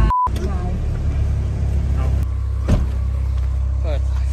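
Steady low road rumble inside a moving car's cabin, with a short beep right at the start and a single knock about two-thirds of the way through.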